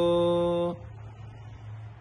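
Pali pirith chanting voice holding the last syllable of a verse line on one steady pitch, ending under a second in; then a pause in which only a faint steady low background drone goes on.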